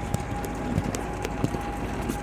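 Footsteps on brick paving, a few sharp irregular steps about every half second, over a faint steady high-pitched tone in the background.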